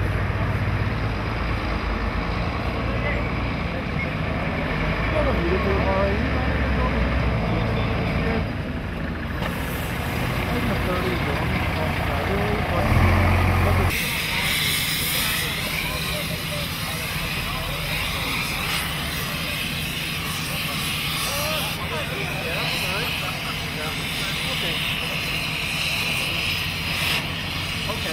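A large vehicle's engine idles with a steady low rumble. About halfway through it cuts to the steady high hiss of an oxy-fuel cutting torch burning through metal on a wrecked train and car.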